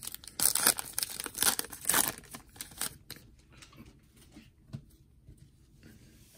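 A foil trading-card pack being torn open by hand, with a quick run of rips and wrapper crinkles over the first three seconds, then only faint handling rustles as the cards come out.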